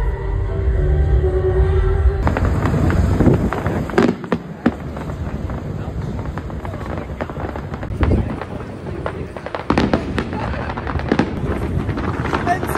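Music plays for about the first two seconds and then gives way to fireworks: dense crackling with sharp bangs, the loudest about four, eight and ten seconds in.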